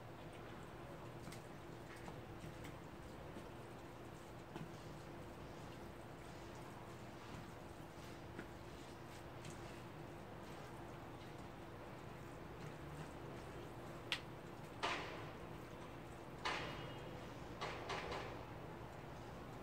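Chopsticks mixing sauce-coated jjajang noodles in a bowl, faint small ticks over a steady low hum, then a sharp click and three brief wet swishes near the end.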